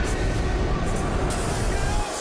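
A loud, steady rumbling rush of noise, a blast-like sound effect laid over music, with a brighter hiss joining about two-thirds of the way through.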